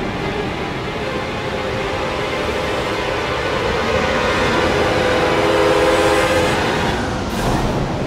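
Background music: a dense, low rumble under sustained tones that swell to a peak about six seconds in, then fall back.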